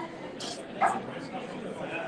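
Murmur of people talking at restaurant tables, with one short, loud yelp-like cry a little under a second in.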